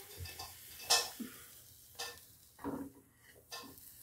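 A few light metal knocks and clinks, about five spread over the four seconds, as a pressure cooker is handled and its lid put on.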